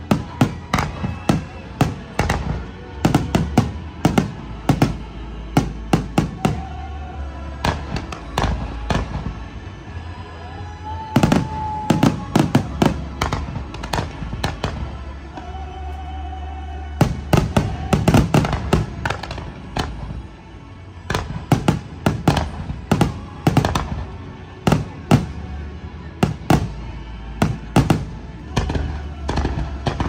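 Aerial fireworks going off in rapid, irregular bangs and pops, in dense volleys with short lulls between, over show music with a steady bass.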